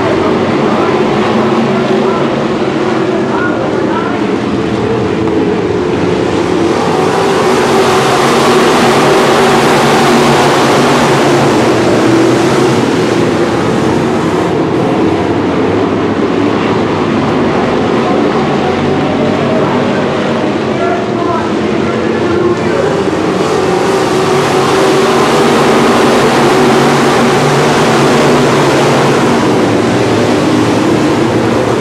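A pack of IMCA Northern Sportmod dirt-track race cars running at racing speed, their V8 engines blending into one steady sound. It swells louder about a quarter of the way in and again near the end as the field comes past.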